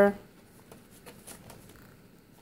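A paper page being turned in a ring-binder planner: a few faint rustles and flicks of paper.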